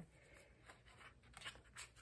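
Near silence, broken by a couple of faint short scratches late on, from the pointed tip of a piercing tool pushing ribbon through a slot in cardstock.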